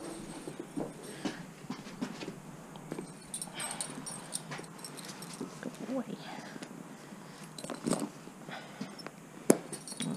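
Pony tack being handled during saddling: scattered clicks and rustles of leather and buckles. Short soft whining vocal sounds come about six seconds in, and a sharp click near the end is the loudest sound.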